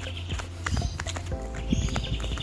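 Running footsteps on brick paving, picked up by a phone's microphone while filming on the move, with a few distinct footfalls. Background music with a steady low bass runs underneath.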